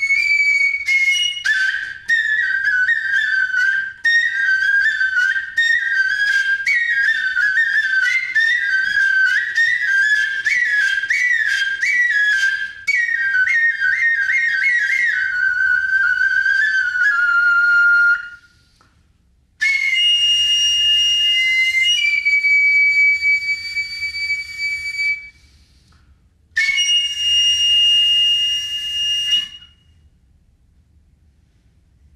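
Nohkan (Noh transverse flute) played solo: quick, ornamented phrases flickering up and down for about fifteen seconds, settling on a lower held note. After a short pause come long, shrill high held notes, the first shifting pitch partway, with a brief silence before the last one.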